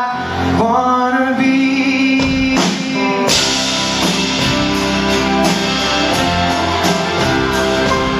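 Live rock band playing a song, with a man singing the lead. The accompaniment is sparse at first. Bass and drums come in about two seconds in, and the full band with cymbals joins a second later.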